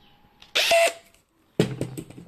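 Cordless drill with a stepped pocket-hole bit boring into a wooden board through a pocket-hole jig, in two short bursts: one about half a second in, and another starting near the end with a steady low motor hum.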